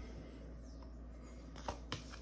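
A tarot card laid down on a cloth-covered table by hand, giving two light taps near the end over faint room hum.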